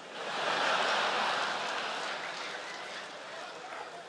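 Large theatre audience laughing and applauding, swelling over the first second and then slowly dying away.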